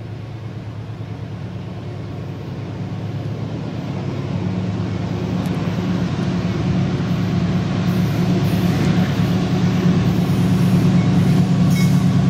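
CSX GE AC6000CW diesel locomotive approaching, its low engine drone growing steadily louder as it nears.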